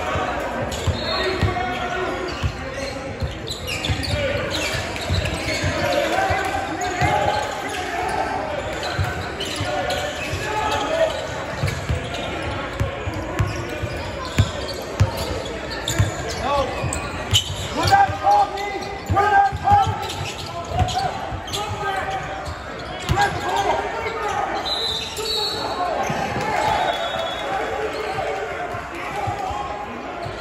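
Basketball bouncing and players running on an indoor gym court, heard as irregular knocks under a steady din of spectators' and players' voices and shouts, with the echo of a large hall.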